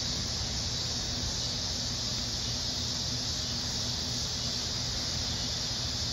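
Steady high-pitched drone of a chorus of summer insects, with a low steady hum underneath.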